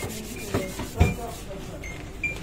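Papers being handled on a counter: rubbing and rustling, with two sharp knocks about half a second and a second in.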